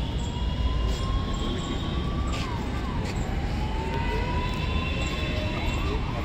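A siren wailing, its pitch rising slowly, dropping sharply about two and a half seconds in, then rising again, over a steady low rumble.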